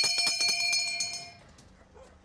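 Brass hand bell rung rapidly, with many quick clanging strikes and a sustained ring, to mark the on-air time call. The ringing stops about a second and a half in.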